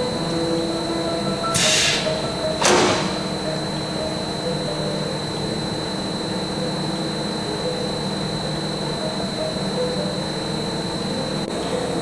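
Large oil-country lathe running under power in its semi-automatic threading cycle, with the spindle turning and the carriage feeding: a steady machine hum with several whining tones. Two brief hiss-like bursts come about one and a half and three seconds in.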